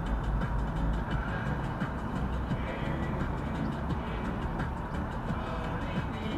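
Steady road and engine noise of a car driving at about 40 km/h, heard from inside the cabin, with music playing over it.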